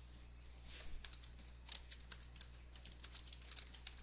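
Typing on a computer keyboard: a quick run of faint key clicks that starts about a second in and keeps going.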